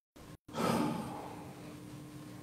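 The sound cuts out completely twice in the first half-second. Then a person's breathy exhale or sigh close to the microphone begins about half a second in and fades over about a second, over a faint steady hum.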